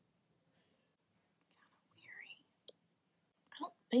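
Mostly quiet room with a woman's faint whispered murmur about two seconds in, a single small click shortly after, and her speech starting at the very end.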